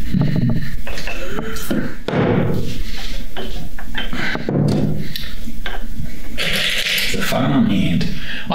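A man talking and exclaiming in short phrases, with a few light knocks early on.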